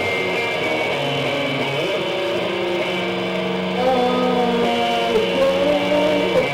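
Live rock band with electric guitar playing sustained, ringing notes, growing a little louder about four seconds in.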